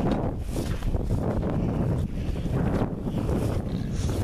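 Wind buffeting the microphone in a steady low rumble, with footsteps swishing through wet grass about once a second.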